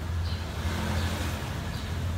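A motor vehicle's engine running with a steady low hum that grows a little louder in the middle.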